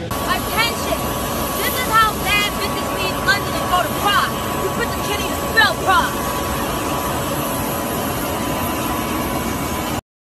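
Steady jet engine noise with a constant whine, and a woman speaking over it during the first six seconds or so.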